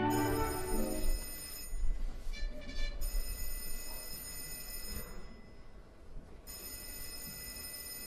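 Telephone bell ringing in long rings: three rings of about two seconds each, with short pauses between, as music fades out in the first second.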